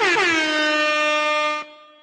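Air horn sound effect: the tail of a quick run of short stuttering blasts runs into one long steady blast, which cuts off suddenly about a second and a half in.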